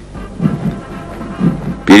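Military band music coming up in level, with low, sustained brass-like notes. A man's narrating voice starts near the end.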